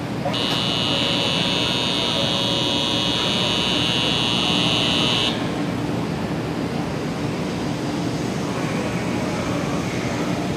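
Departure warning buzzer on a Shinkansen platform: a steady high electronic tone that sounds for about five seconds as the doors close, then cuts off. A steady low hum from the station and the waiting 500 series train runs underneath.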